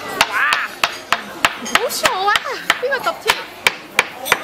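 A metal spoon banged over and over on a table by a toddler: sharp, irregular knocks, several a second.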